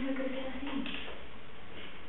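A person's voice holding one steady, level note for about the first second, then only steady background hiss.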